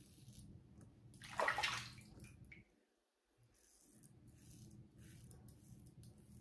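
Single-edge safety razor strokes scraping through lathered stubble: one short, louder scratchy stroke about a second and a half in, then only faint brief scrapes.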